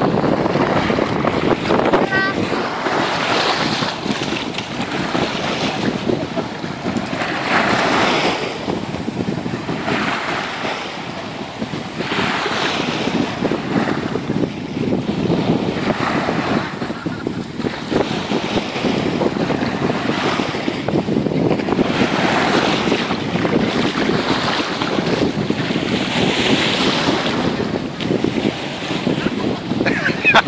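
Small sea waves washing onto a sandy, pebbly shore, swelling every couple of seconds, with wind buffeting the microphone.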